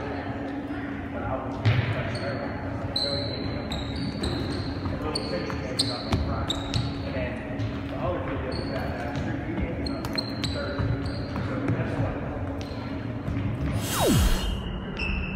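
A soccer ball being kicked and bouncing on a hard gym floor, with sneakers squeaking sharply many times over children's background voices, all echoing in a large hall. The loudest kick comes just under two seconds in.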